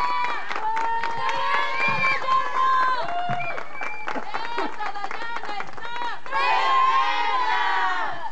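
A group of young women's voices cheering, shouting and whooping, with scattered hand claps in the first few seconds. About six seconds in, a louder burst of many voices cheering together.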